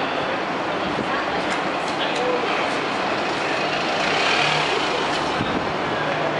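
Busy city street ambience: a steady wash of traffic noise with passers-by talking in the background and a few faint clicks.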